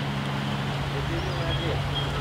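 Steady rush of flowing stream water, with faint voices in the background.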